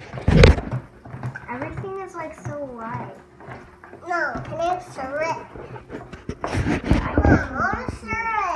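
Young children's high voices talking and babbling, with loud bumps about half a second in and again around seven seconds.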